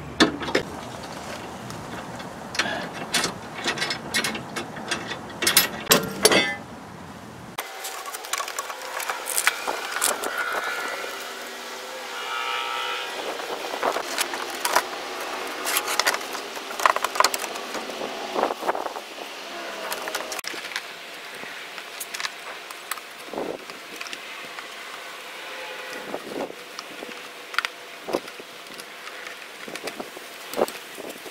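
Irregular metallic clicks and knocks of hand tools: a socket wrench taking a nut and bolt off a car's frame support, then, after a cut, tools handling and snipping the plastic underbody splash guard.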